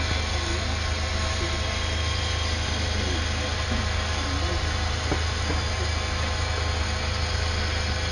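Steady background noise: a constant low hum under an even hiss, unchanging throughout.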